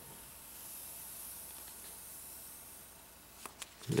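Protective plastic film being peeled off a smartphone's glass back panel: a faint, drawn-out hiss, with a couple of small clicks near the end.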